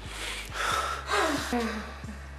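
A person gasping heavily for breath, in two breathy bursts, the second trailing off into a falling moan.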